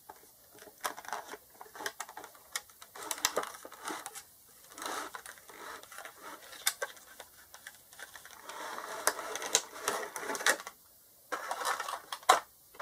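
Clear plastic packaging of an action-figure box being handled as the inner plastic tray is slid out of the cylindrical tube: irregular sharp plastic clicks and scraping rustles.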